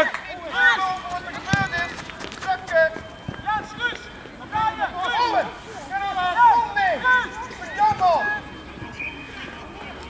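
Short, high-pitched shouted calls from young voices across a football pitch, one after another every second or so, with no words made out; they stop near the end.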